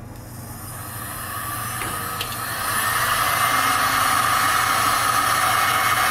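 Black+Decker heat gun running on its low setting, its fan blowing with a steady rushing hiss and a high motor whine. It grows louder over the first three seconds, then holds steady.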